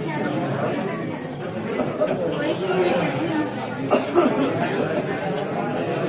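Indistinct chatter of many people talking at once in a queue, with a brief knock about four seconds in.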